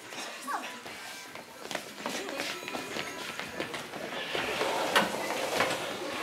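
Footsteps, shuffling and knocks on a wooden stage floor as desks are pushed into place, with low murmured voices underneath; a sharp knock about five seconds in is the loudest.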